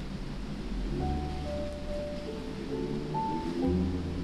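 Soft background music of held notes over a low bass, coming in about a second in.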